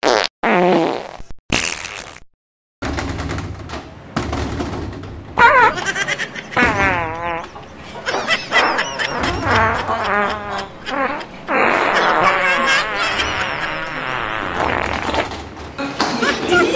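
Comedy fart sound effects. There are a few short blasts in the first two seconds, a brief pause, then a long run of blasts that waver in pitch.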